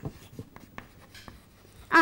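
Chalk writing on a chalkboard: a faint string of short taps and scratches as letters are written.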